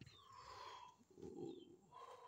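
Faint outdoor birdsong, with a low coo, such as a dove's, a little over a second in.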